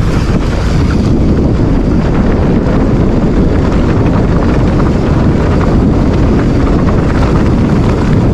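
Loud, steady wind buffeting the microphone of a handlebar-mounted camera on a mountain bike rolling down a dirt trail, mixed with the rumble of the tyres on the dirt.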